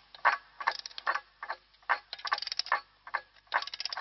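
Sharp mechanical clicks in an uneven rhythm: single clicks about half a second apart, broken by quick rattling runs of clicks about two seconds in and again near the end.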